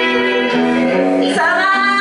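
Live Japanese metal band playing: a woman sings held notes that step from one pitch to the next over electric guitar and bass.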